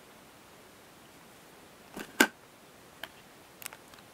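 A wooden carrying case with metal latches being handled and set down on a workbench: two sharp knocks about halfway through, then a few lighter clicks.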